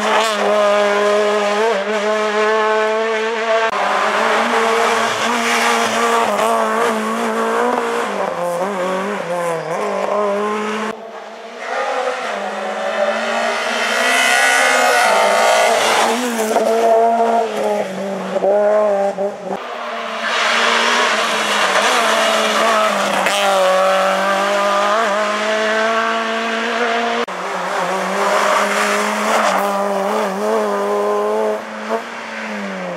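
Small hatchback rally cars driven hard through tight tarmac corners one after another, their engines revving up and falling back between gearshifts, with tyre squeal.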